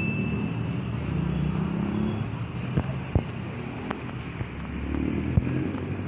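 A minivan's engine running as it drives past close by, its hum fading after about two seconds, over street traffic. A few sharp knocks follow.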